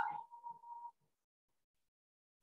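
The last of a woman's spoken word trailing off, a faint held tone and a few soft sounds for under a second, then dead silence.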